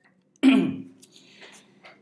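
A man clearing his throat once, a short voiced burst about half a second in that falls in pitch.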